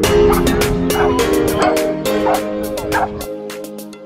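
A Dalmatian barking several times over loud background music with sustained chords. The music drops away near the end.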